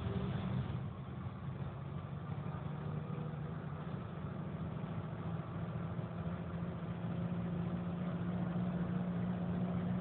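Engine drone and road noise heard from inside a moving vehicle: a steady low hum that holds an even pitch throughout.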